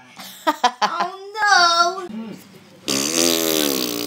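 A child's voice briefly, then about three seconds in a sudden, long, loud fart sound, rough and hissy with a falling low tone, still going at the end.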